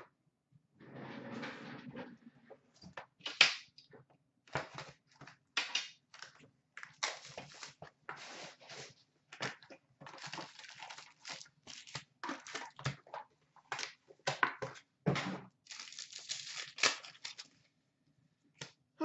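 Plastic wrapping and foil card packs being torn open and crinkled by hand, in an uneven run of crackles and rips.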